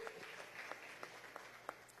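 Faint, scattered applause from seated deputies, thinning out to a few separate claps.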